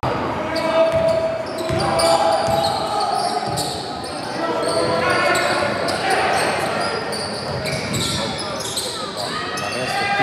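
Basketball game on a hardwood gym floor: the ball bouncing as it is dribbled, sneakers squeaking in short chirps, and players and bench calling out.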